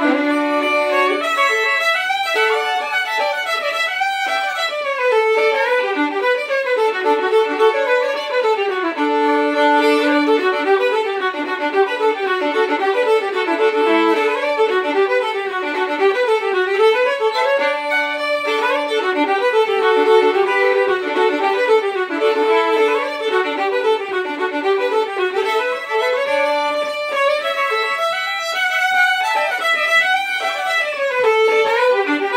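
Two fiddles playing a tune together, unaccompanied, with quick-moving melody notes and no pauses.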